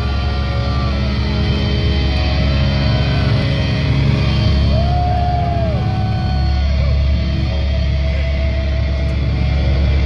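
A live metal band's amplified guitars and bass holding a loud, steady low drone, with long held and slowly bending feedback tones over it.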